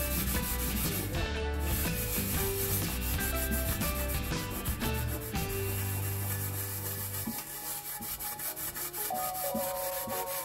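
A scouring pad scrubbing the burnt bottom of a stainless steel pot back and forth, grinding through burnt-on residue and detergent.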